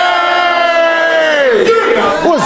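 A single voice holding one long shout, its pitch sinking slowly and then dropping away near the end, followed by short rising and falling vocal swoops.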